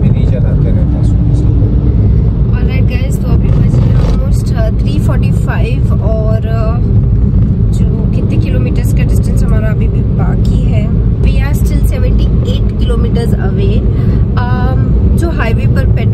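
Steady road and engine rumble inside a moving car's cabin, loud throughout, with voices talking over it now and then.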